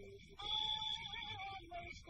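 A woman singing one long held note with a wavering vibrato, starting about half a second in, from a 1940s jump-blues vocal duet. A steady high-pitched whine sits underneath.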